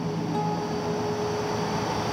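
Acoustic guitar playing, its notes held and ringing steadily over a faint hiss, in a concrete parking garage.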